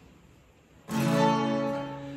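Acoustic guitar: after a short pause, a chord is strummed about a second in and rings out, slowly fading.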